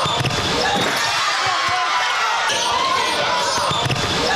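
A basketball dribbled on a hardwood court during a game, with chatter and shouts from players and spectators in a large gym.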